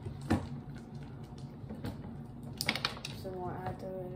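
A few clicks and knocks of a plastic activator bottle and a spatula against plastic bowls while slime is mixed: one sharp knock shortly after the start and a quick run of clicks past the middle. Near the end a person hums one steady note.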